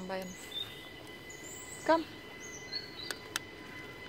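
Quiet outdoor background with a few faint, short, high bird chirps scattered through it, and a brief call of a word about two seconds in.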